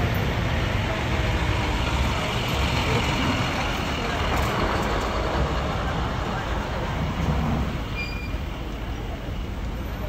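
Heavy dump truck diesel engines running close by: a steady low rumble under a broad hiss, easing off slightly near the end.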